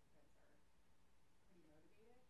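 Faint, distant speech over quiet room tone, too low to make out.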